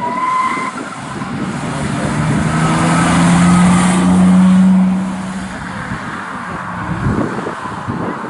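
Historic rally car's engine accelerating out of a junction and passing close by, loudest about four seconds in, then fading as it drives off. A brief high squeal right at the start.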